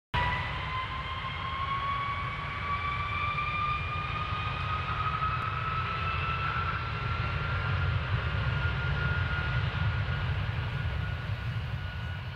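Intro sound effect: a steady low rumble under a single droning tone that slowly rises in pitch, like an aircraft engine building.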